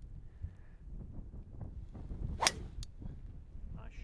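A driver striking a golf ball off the tee: one sharp crack about two and a half seconds in, over a steady low rumble of wind on the microphone.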